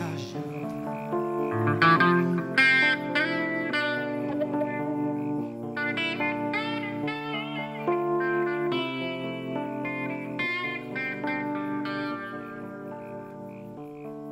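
Electric guitar, a Telecaster-style solid body, played fingerstyle in an instrumental passage of a zamba: a run of picked single notes and chords, some notes bent or wavering in pitch around the middle.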